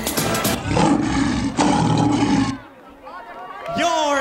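Pom routine music mix: a beat, then a deep growling roar sound effect in two long pieces that cuts off sharply. After a short dip, a voice sliding in pitch comes in near the end.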